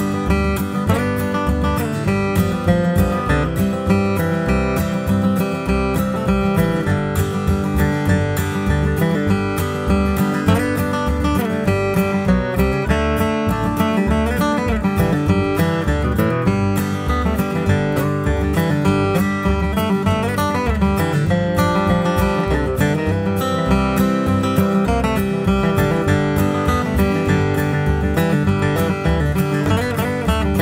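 Taylor acoustic guitar flatpicked in a bluegrass tune in G, single-note melody mixed with strummed chords at a steady beat.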